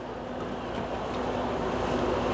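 Battery-electric passenger ferry passing close by, very quiet: a low hum with a couple of faint steady tones over wind and water noise, growing slowly louder.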